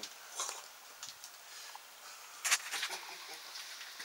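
Quiet, with faint rustles and a short burst of scuffing noises a little past halfway.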